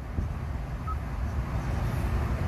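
Steady low rumble of background noise inside a car cabin, with one brief faint beep about a second in as the infotainment touchscreen is pressed.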